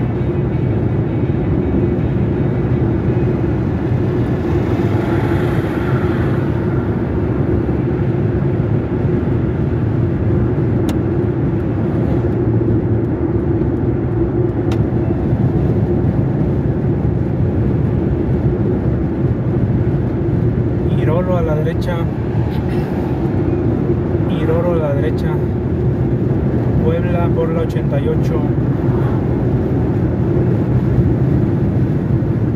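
Steady road and engine noise of a car cruising on a highway, a continuous low rumble.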